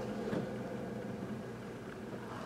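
Steady low background hum of room noise, with one faint tick about a third of a second in as trading cards are handled.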